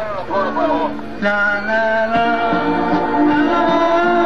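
Live band playing, with singing: a voice for about the first second, then the band comes in with held chords and singing, louder and steady.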